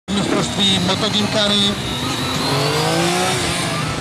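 Motorcycle engine revving, its pitch rising steadily through the second half, under talking voices in the first second and a half.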